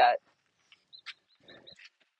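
A spoken word ends, then near silence broken by a few faint, short, high chirps about a second in and again near the end.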